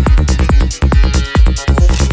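Psytrance music: a fast, steady kick drum, a little over two beats a second, with a rolling bass line between the kicks and bright hi-hat ticks above.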